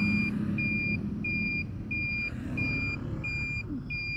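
A turn-signal beeper sounding steady, evenly spaced high beeps, about three every two seconds, with its indicator on for a U-turn. Under it is the low rumble of the engine and the surrounding traffic.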